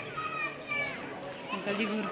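People talking in the background, one voice high-pitched.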